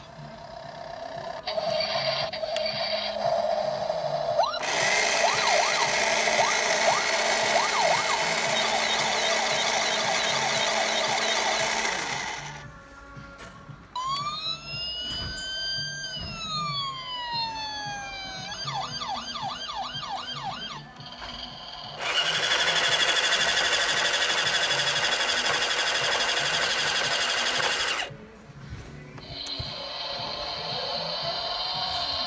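Electronic sound effects from Teamsterz toy emergency vehicles: a wailing siren sweeping up and down about halfway through, then a fast yelping siren, between longer stretches of loud, noisy sound.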